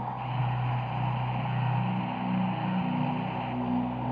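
Dark, atmospheric psytrance intro without a drum beat: held synth bass tones and slowly shifting sustained notes, with a hissing synth layer that comes in just after the start and fades out near the end.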